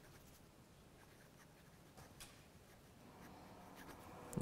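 Very faint scratching of a pen writing on a projector sheet, a few light strokes, over near-silent room tone.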